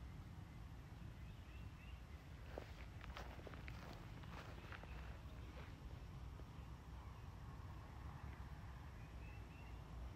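Quiet outdoor ambience: a low rumble of wind on the microphone, a few soft footsteps about two to four seconds in, and faint bird chirps.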